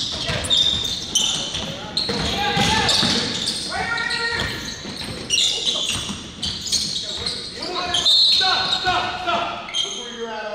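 Basketball dribbled and bouncing on a hardwood gym floor, with repeated sharp strikes, short high sneaker squeaks and players' voices calling out, all echoing in a large hall.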